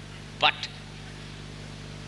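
A pause in a man's speech: a single short spoken word about half a second in, otherwise only a steady low electrical hum with hiss, typical of an old analogue video recording.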